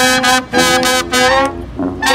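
Brass band with sousaphone, trumpets, alto saxophone and clarinet playing a jazz tune in short, punchy repeated notes. The horns drop out briefly near the end, leaving a low note.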